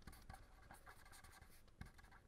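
Faint scratching of a pen writing on paper, in short strokes.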